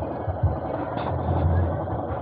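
Yamaha YTX 125's single-cylinder four-stroke engine idling steadily while the motorcycle stands still, a low, even pulsing throb.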